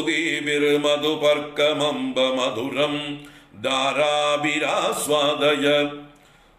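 A man chanting Sanskrit stotram verse in a steady recitation tone. He chants two long phrases with a short breath between them, and the voice stops right at the end.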